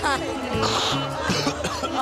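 A man coughing twice, choking on the chilli heat of a very spicy curry paste he has just tasted, over background music.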